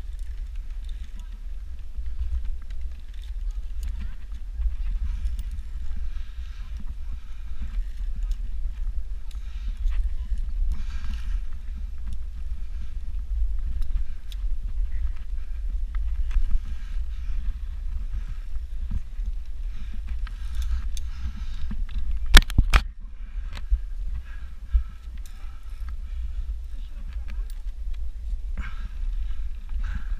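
Steady low rumble of wind and handling on a body-worn action camera's microphone as the wearer climbs hand over hand through a rope net, with faint voices in the background. About two-thirds of the way through there is a sharp double click.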